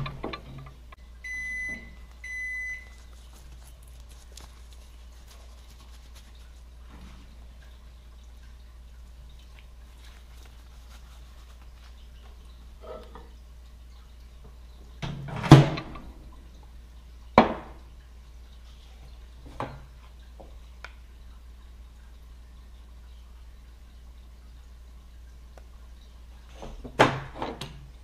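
Two electronic beeps from a microwave oven's keypad about a second and a half in, as liquid plastisol is set to reheat; then a faint background, a loud clunk about halfway through and a second sharp knock shortly after. Near the end, a few clunks as the glass measuring cup is set back down on the table.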